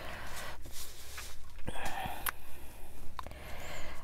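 Paper rustling as hands rub and press glued paper pieces flat onto a card with a crumpled tissue, with a few light clicks.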